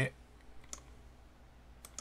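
Two faint, sharp computer mouse clicks about a second apart, over low room hiss, made while editing in an editing program.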